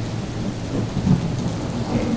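Steady rain-like hiss across the whole range, with a low rumble beneath it.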